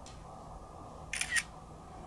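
iPhone camera shutter sound as a photo is taken: one short double click about a second in, over a steady low background hiss.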